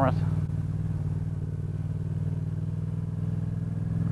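Yamaha FZ-07's parallel-twin engine running at a steady low speed while the motorcycle is ridden, with little change in pitch.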